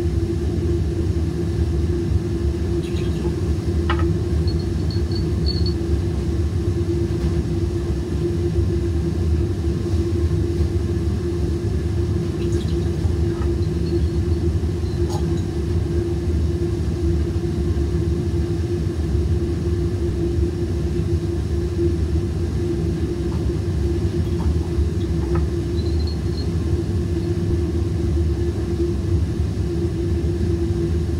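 Steady rumble of a laboratory fume hood's ventilation, with a constant hum running through it. A few faint light clicks come and go over it.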